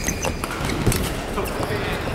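Close of a badminton rally on an indoor court: sharp racket-on-shuttlecock hits and footfalls, the loudest about a second in, with short shoe squeaks on the court floor early on, over a constant hall background.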